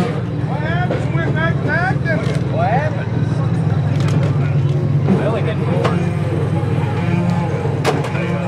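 Engine of a wrecked demolition-derby minivan running with a steady low rumble as it drives slowly past. A single sharp knock sounds near the end.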